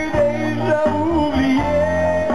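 Live band music: a man singing into a microphone over electric bass guitar and drums.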